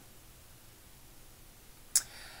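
Quiet room tone in a pause between spoken sentences, ending with one short, sharp click just before the end.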